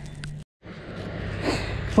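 Steady outdoor background noise with a low hum, cut off completely for a moment about half a second in, then returning and swelling slightly before the end.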